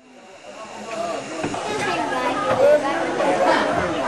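Indistinct passenger chatter over the hiss of a steam locomotive, fading in during the first second.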